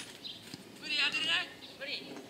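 Futsal ball kicked once with a sharp knock right at the start, then a player's loud, high, wavering shout about a second in and a shorter call near the end.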